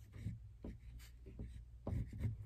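Oil pastel stick rubbed across construction paper in a series of short, faint strokes, layering lighter colour over a drawing.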